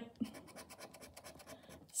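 A plastic poker-chip scratcher scraping the scratch-off coating from a paper scratch card in rapid, even strokes, faint and close.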